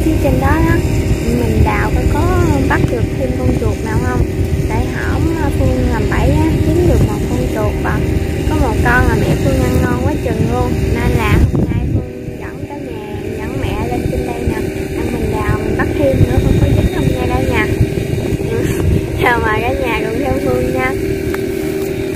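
A woman talking over the steady drone of a small engine, with wind buffeting the microphone; the low wind rumble drops away suddenly about halfway through.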